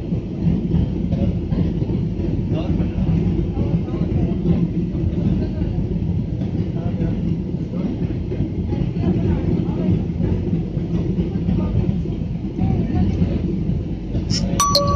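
Airliner cabin noise on the approach to landing: a steady low rumble of jet engines and airflow heard from inside the cabin.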